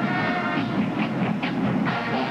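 Marching band brass holding a chord that thins out about half a second in, followed by a few drum strokes.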